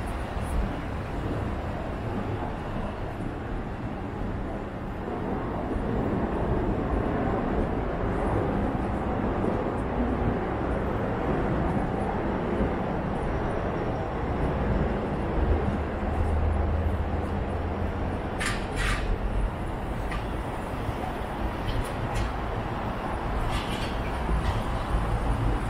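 City street ambience: a steady low rumble of traffic and urban noise. It swells into a heavier low rumble a little past the middle, followed by two short sharp sounds in quick succession.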